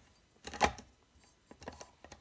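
A stainless-steel grinder cup set down onto the plastic base of an Aicok electric coffee grinder: one sharp clunk about half a second in, then a few light clicks near the end as it is seated. The motor is not running.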